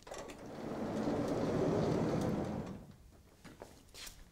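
A vertically sliding chalkboard panel being pulled down in its frame: one smooth rumble that swells up and dies away over about two and a half seconds.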